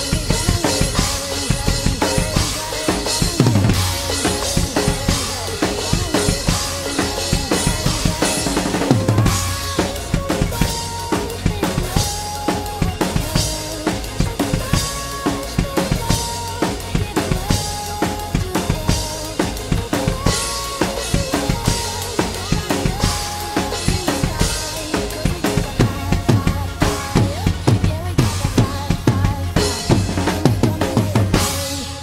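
PDP X7 acoustic drum kit played in a fast, busy groove of kick drum, snare and Zildjian cymbals, over an instrumental electronic backing track. The backing has short held synth notes and a low falling sweep about three and a half seconds in and again near nine seconds.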